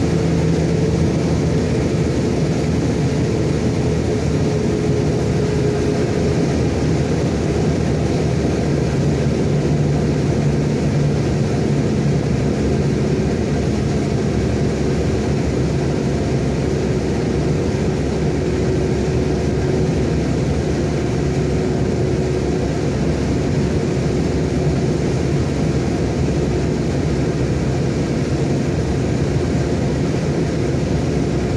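Heavy truck's engine running steadily at cruising speed with tyre and road noise, heard from inside the cab; the engine's hum holds an even pitch with only slight drift.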